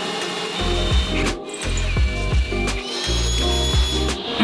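Ryobi cordless drill running, boring a quarter-inch pilot hole through a fiberglass boat hull, its motor whine holding steady and shifting pitch a couple of times. Background music with a steady bass line plays under it.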